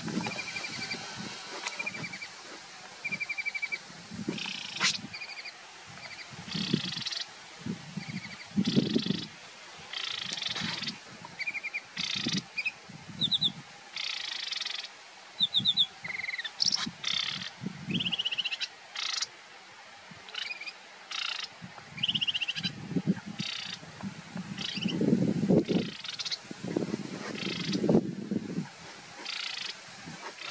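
Marsh warbler singing: a long run of quick, varied phrases with rapid trills and buzzy notes, the species' mimicking song, broken by short pauses. Low rumbles come and go underneath, strongest in the last few seconds.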